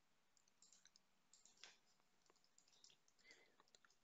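Near silence broken by faint, scattered computer keyboard and mouse clicks.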